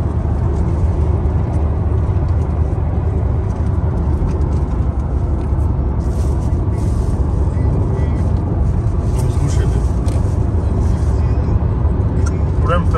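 Steady low rumble of tyre and engine noise heard inside a car cabin while driving at highway speed.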